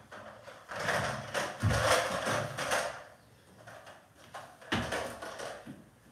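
Thuds and shuffling from a dumbbell workout, with a hard low thump about two seconds in and another sudden knock near five seconds.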